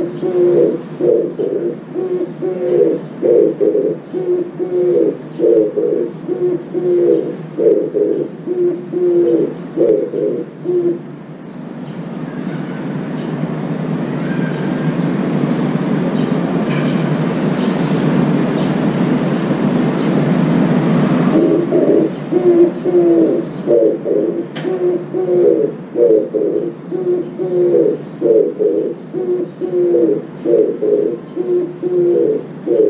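Oriental turtle dove singing its cooing song in repeated short phrases. Partway through, the song breaks off for about ten seconds while a steady, mostly low-pitched noise grows louder and then cuts off suddenly, after which the cooing resumes.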